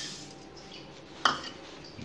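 Rolled oats tipped from a plastic measuring cup into a saucepan: a click at the start and a short hiss of pouring, then a sharp knock of kitchenware about a second and a quarter in.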